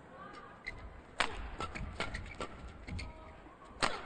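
Badminton rally: rackets striking the shuttlecock in sharp hits at irregular intervals, the loudest near the end, with short squeaks from court shoes between them.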